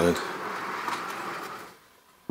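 A large sandy fossil-bearing rock block being turned by hand on a round board, a steady gritty scraping rub that fades out near the end.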